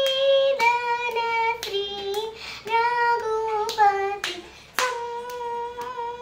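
A young girl singing a Carnatic piece in raga Sankarabharanam, unaccompanied, holding notes and bending between them. Her hand strikes out the tala about once a second.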